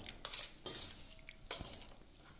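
A steel spoon and cup clinking and scraping against a small stainless steel bowl as red chili powder is mixed with water into a spice paste. There are a few short, sharp clinks, some in the first second and another just past the middle.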